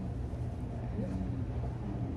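A steady low hum of room tone, with a faint short pitched sound about a second in.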